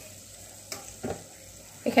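Spiced vegetables frying with a faint, even sizzle in oil in a pressure-cooker pot while a metal ladle stirs them, with two light knocks about a second in.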